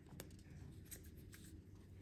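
Near silence, with a few faint light ticks and rustles of small paper slips being handled.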